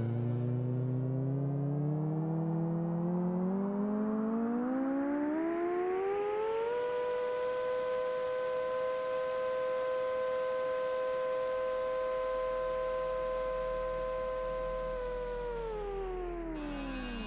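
A siren-like wail: one pitched tone that climbs slowly for about seven seconds, holds a steady pitch, then starts to fall near the end, like an air-raid siren winding up and down.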